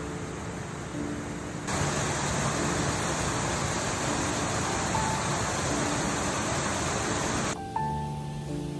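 A stream rushing over rocks, much louder and hissier from about two seconds in, when the water is heard close as it spills down a small cascade. It cuts off shortly before the end. Soft, slow background music plays throughout.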